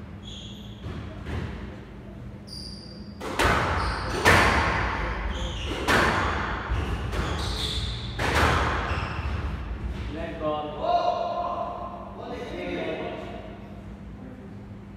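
Squash rally: the ball is struck by rackets and smacks off the court walls, four loud echoing hits about one to two seconds apart starting a few seconds in. Short high squeaks from the players' shoes on the wooden floor come before them.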